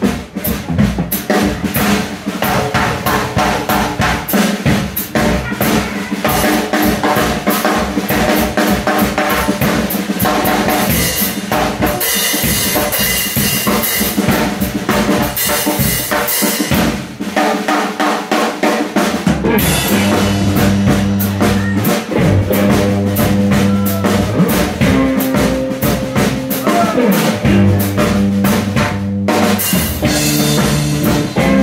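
Drum kit played hard and fast at the front of a live blues-rock band: dense snare, bass-drum and cymbal strokes, with a pitched bass line underneath that drops out briefly past the middle.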